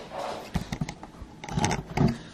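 Handling noise: a quick series of small clicks and knocks in two clusters about a second apart, as the phone doing the recording is picked up and moved.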